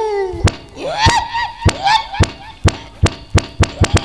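A quick series of sharp knocks that come faster and faster toward the end, mixed with short high-pitched cries that rise and fall in pitch in the first half.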